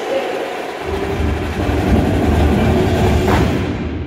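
Indoor percussion ensemble playing with a gym's echo: a dense, rumbling low end builds about a second in and stays heavy, with a bright crash near the end.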